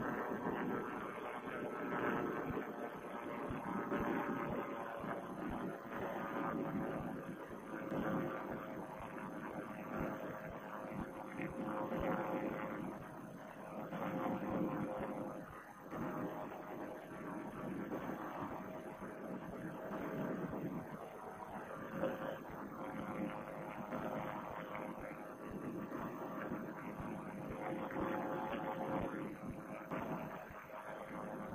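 Vittorazi Moster two-stroke paramotor engine running steadily in flight, heard as a dull, droning hum that swells and dips a little, picked up through a band-limited headset microphone along with wind.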